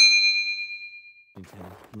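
A bright, bell-like ding sound effect, struck once and ringing out with several clear tones, fading away over about a second and a half.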